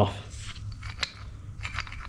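Steel brake block and hanger of a 7.25-inch gauge locomotive rocked by hand on its pivot bolt, giving a few light metal clicks, one sharper about halfway through. The parts knock within the bit of play deliberately left in the joint.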